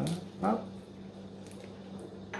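A couple of short spoken syllables, then quiet room tone with a steady low hum.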